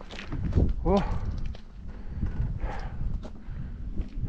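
Mountain bike riding over a loose rocky trail: a steady low rumble with irregular knocks and rattles as the tyres roll over stones. About a second in, a short voiced sound from the rider.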